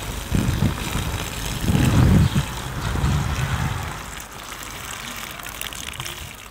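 Water poured from a plastic bucket splashing onto the soil around a newly planted sapling, under uneven low rumbling that swells three times in the first four seconds.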